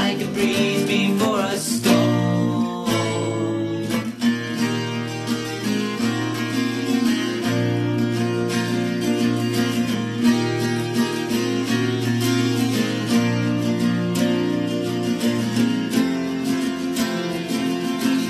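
Acoustic guitar strumming chords steadily in an instrumental passage of a song, a live recording.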